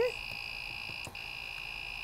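Creality Ender-3 3D printer's buzzer beeping a steady high tone, broken by a brief gap about a second in. It is the filament-change alert, which keeps sounding while the print is paused for a filament swap.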